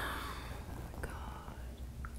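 A woman's breathy sigh, an exhale that fades out in the first half second or so, then quiet room tone with a couple of faint clicks.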